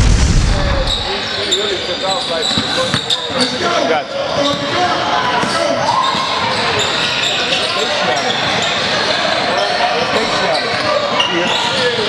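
A deep boom dies away in the first second, then live basketball game sound in a large echoing gym: many voices chattering and calling, with a basketball bouncing on the hardwood court.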